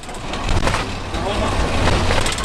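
Steady low engine and road rumble inside the cab of an old motorhome driving on the highway, with a person's voice over it. The engine is running hot and failing.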